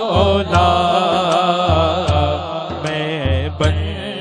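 Male voices singing a naat through microphones and a PA in long, ornamented held notes, over a low regular pulse about twice a second.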